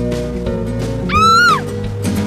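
Cartoon background music with a steady beat. About a second in, a short, high-pitched vocal sound effect rises and then falls in pitch, louder than the music.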